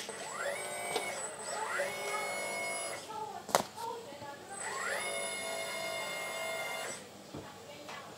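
Electric hydraulic pumps of a 1/10-scale RC D11 bulldozer spinning up with a rising whine that levels off into a steady high whine, twice, as the blade tilt cylinders move. A sharp click comes between the two runs.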